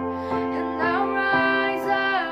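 A young girl singing solo over a recorded instrumental backing track, her voice sliding between held notes above steady accompaniment chords.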